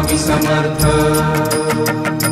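Instrumental passage of a Marathi devotional song to Swami Samarth, between sung lines: sustained held notes over a steady percussion beat.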